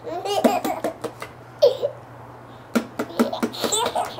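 A baby laughing in three bursts of quick, high-pitched giggles, the longest in the first second and again near the end.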